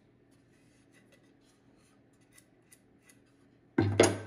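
Faint light taps of wood being handled, then near the end a loud clatter as an ambrosia maple cutout is set down on the router table top.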